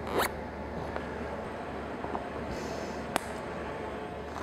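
A nylon cable tie zipping briefly through its ratchet as it is pulled tight, just after the start, then a single sharp click about three seconds in.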